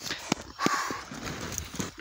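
A few sharp knocks at uneven spacing, with a brief rush of noise about half a second in.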